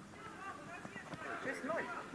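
Children's voices shouting and calling out across a mini-football pitch, in short overlapping calls that grow busier in the second half, with a few faint knocks.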